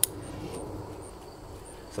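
A single sharp snip of bonsai pruning shears cutting an elm branch. After it, a faint high chirp repeats about every half second or so in the steady background, typical of a cricket.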